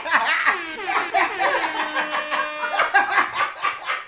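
Two men laughing hard together, their laughs overlapping in quick repeated ha-ha pulses, with one long drawn-out note near the middle.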